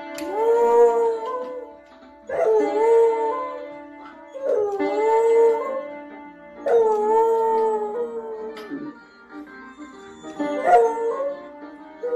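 A beagle-type hound howls five times, each long howl held a second or two and dropping in pitch at the end. Under the howls, piano notes ring out as its front paws press the keys.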